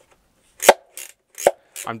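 Handheld grabber-style robot claw with corrugated-plastic (corflute) claw covers snapping shut: two sharp clacks less than a second apart, with a fainter click between them.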